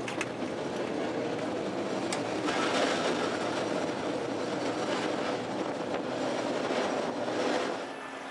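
Heritage streetcar heard from on board at the front platform, running along street track: a steady rumble and rattle of wheels and car body. There is a sharp click just after the start and another about two seconds in, and the running gets louder from about two and a half seconds.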